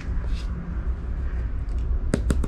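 A steady low rumble, with a faint brief rustle of a cardboard LP record sleeve being handled about half a second in.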